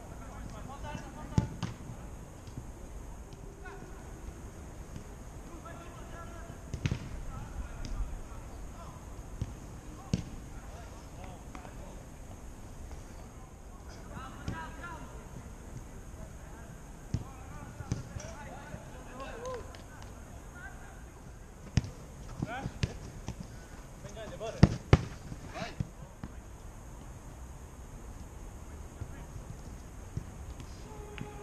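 A football being kicked and struck at irregular intervals, sharp short thuds, with two loud ones close together late on. Players' scattered shouts and calls run in between.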